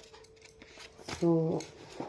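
A single short spoken word about a second in, with a sharp click at the start and a few faint small clicks around it against a faint steady hum.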